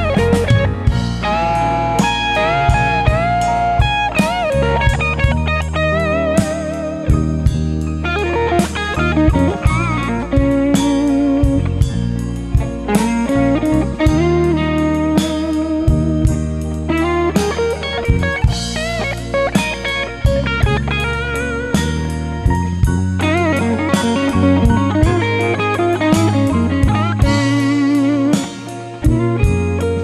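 Blues instrumental break: an electric guitar plays lead with notes bent upward and wavering with vibrato, over a steady bass line and drums.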